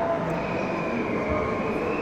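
Steady background din of a large exhibition hall, with a thin high tone holding steady from about a third of a second in.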